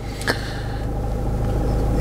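Land Rover Freelander SD4's 2.2-litre four-cylinder diesel engine idling just after a push-button start, heard from inside the cabin as a steady low hum that grows slightly louder, with one light click about a third of a second in.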